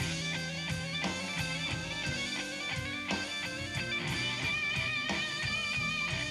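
Live blues band playing: an electric guitar solo of quick note runs over bass and drums, ending on a long held note with wide vibrato in the second half.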